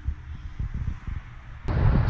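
Low, irregular rumbling and bumps from a handheld camera microphone being moved around. Near the end the sound cuts suddenly to louder, steadier outdoor noise with wind on the microphone.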